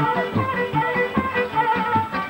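Folk dance music for a kolo: a sustained melody line over a steady, regular bass beat.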